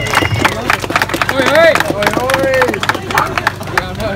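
A small crowd clapping, with people cheering and calling out over the applause.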